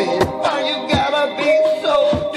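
Music from a hip-hop song, with no words: a drum beat under sustained melodic notes.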